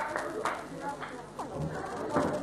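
Indistinct voices in a hall, with scattered knocks and clatter of stage equipment being handled.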